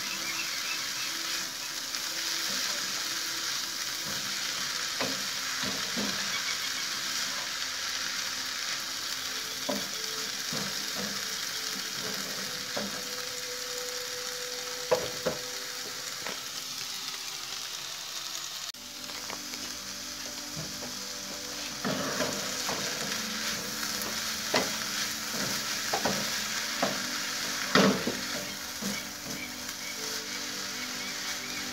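Chard and other sliced vegetables sizzling steadily in a frying pan as they sauté, stirred with a wooden spatula that knocks and scrapes against the pan now and then, more often in the last ten seconds.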